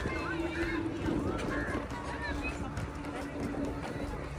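Footsteps walking on stone paving, with indistinct voices in the background and a steady low hum.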